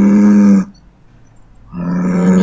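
A bull's bellow from the 3D billboard show's loudspeakers: one long, steady call that stops about two-thirds of a second in, and a second one that starts near the end.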